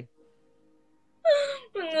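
Near silence for about a second, then a person's voice calling out "Mọi người ơi" ("everyone!") in a long, drawn-out call.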